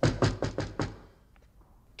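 A quick run of about six sharp knocks in the first second, getting quieter, followed by a near-silent pause.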